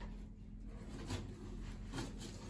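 Faint room hum with a few soft rustles and taps from a cardboard box as its flaps are handled.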